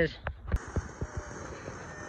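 Ground firework fountain spraying: a steady rushing hiss that starts suddenly about half a second in, with a few sharp pops near its start.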